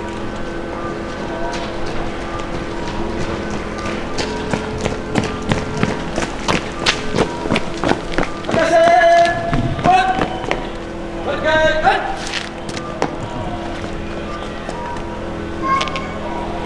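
Boots striking the pavement in sharp, irregular taps as a fire brigade formation marches into place. Two long shouted commands come about halfway through and a few seconds later. Steady held tones of background music run underneath.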